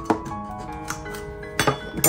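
Background music with held melodic notes, over which a kitchen knife clicks sharply against a cardboard box as it cuts the packing tape: once just after the start and again in a short cluster near the end.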